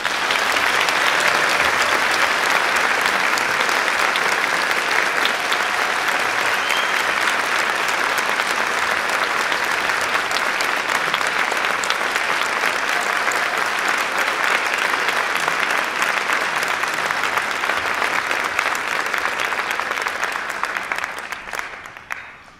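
Theatre audience applauding, a steady mass of clapping that dies away near the end.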